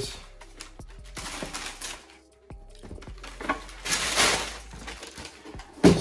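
Tissue paper rustling and crinkling as sneakers are lifted out of a shoebox, in bursts near the start and again past the middle, over soft background music.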